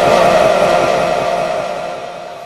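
A Quran reciter's voice holds the last note of a chanted phrase steadily, then fades away into echo.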